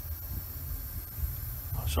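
Neo for Iwata TRN1 trigger airbrush spraying at full blast into a cleaning pot, a steady high hiss of air and cleaner flushing paint residue out of the brush.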